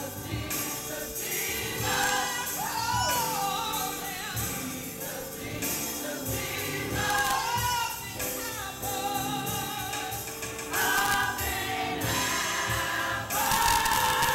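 Gospel choir singing a song with instrumental accompaniment and a steady beat underneath.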